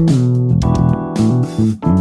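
Electric bass played fingerstyle in a busy solo line, the notes changing every fraction of a second, over a backing track.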